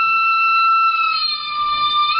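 A small flute holding one long high note that dips slightly in pitch about two-thirds of the way through.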